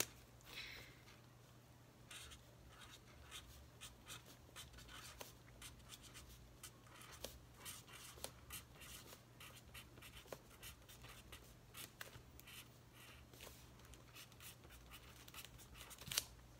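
Sharpie highlighter's chisel tip writing on paper: faint, short, irregular strokes, over a faint low hum.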